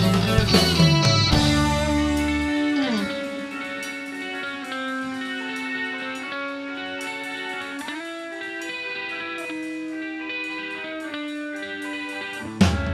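Live band music: the full band plays for the first couple of seconds, then the drums and bass drop out. An electric guitar carries on alone with long held notes and a falling bend.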